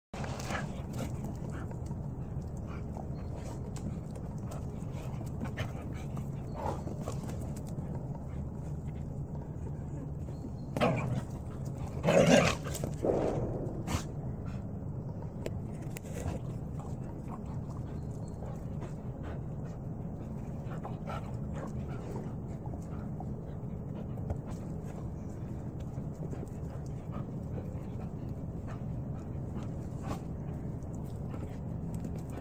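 Galgos (Spanish greyhounds) play-fighting, with scattered scuffling over a steady low background hum. The loudest moment is a short burst of dog vocal noise about 11 seconds in and again from about 12 to 13 seconds in.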